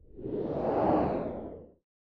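Whoosh sound effect for an animated logo reveal, swelling to a peak about a second in and then fading away.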